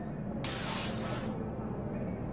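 A sudden burst of hissing noise about half a second in, lasting under a second and fading away, over a steady low rumble.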